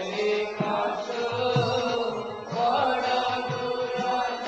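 Devotional kirtan: voices chanting a mantra in a held, sung melody, with musical accompaniment and a few low drum strokes.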